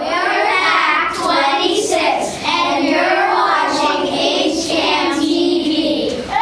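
A group of young boys singing together in unison, many voices at once.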